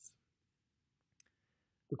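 Near silence in a pause, broken by one short, sharp click a little over a second in.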